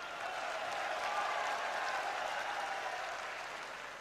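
Large crowd applauding, a steady patter of many hands that swells slightly and then slowly dies away.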